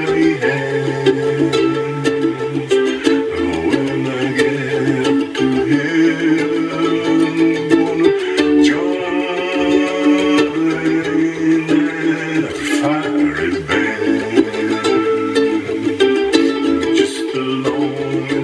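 Solo ukulele playing an instrumental passage of a gospel-blues tune, a low bass line moving under higher melody notes.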